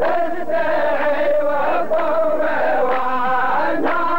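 Rows of men chanting a poet's verse in unison, the chorus of Saudi qalta (muhawara) poetry. The chant carries on without a break.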